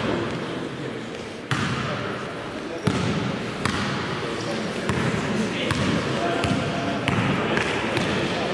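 Basketball being dribbled on a sports hall floor: irregular sharp bounces about a second apart, over players' voices in the hall.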